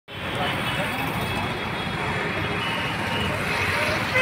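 Steady road traffic noise from passing cars and motorcycles.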